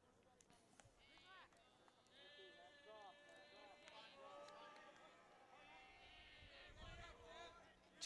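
Faint voices of people calling out and shouting, some calls drawn out, from about a second in to near the end.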